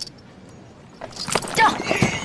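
Horses moving, with hoof clops and the jingle of harness or armour starting about a second in, and a brief wavering call partway through.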